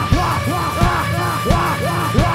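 Live hard rock band playing loud, with drums, bass guitar and distorted electric guitar. A repeated swooping tone rises and falls about three times a second over a steady bass line, with drum hits about twice a second.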